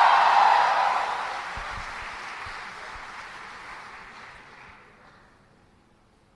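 Audience applauding and cheering, loudest at the start and dying away over about five seconds.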